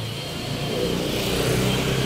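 A motor vehicle engine running close by in the street, a steady low hum that grows a little louder about a second in.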